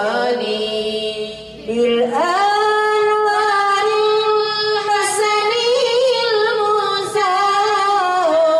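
Women singing Islamic sholawat into handheld microphones, with long held, wavering notes. About a second in the voices drop briefly, then come back and climb to a higher held note.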